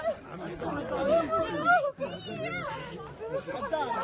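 Several people talking at once close by in overlapping welcoming chatter, with a few higher voices rising and falling in the middle.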